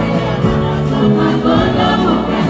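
Live band music with singing, heard from within the audience.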